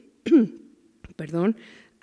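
A woman's voice between phrases of a lecture read aloud: two short voiced sounds about a second apart, the first falling in pitch, with a brief throat clearing.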